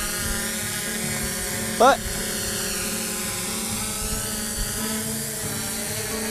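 Fimi X8 SE 2020 quadcopter hovering, its propellers making a steady whine of several held tones.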